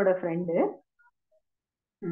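A woman talking briefly, cut off within the first second, then dead silence until her voice returns.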